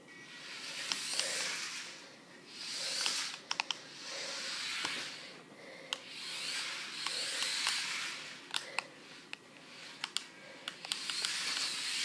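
Air Hogs Hyperactives 5 RC stunt car's small electric motors whirring in repeated bursts of a few seconds each as the throttle is worked, with sharp clicks and knocks of the little car on the hard floor.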